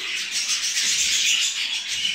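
Dense, continuous high-pitched twittering chatter of many budgerigars in a breeding room.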